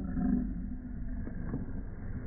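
Five-week-old pit bull puppies growling as they wrestle in play. A short, higher growl comes in the first half-second, then low rumbling continues with a few small scrabbling knocks.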